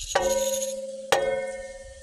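Glass beaker clinking twice, about a second apart, the second strike louder, each leaving a ringing glassy tone that fades away.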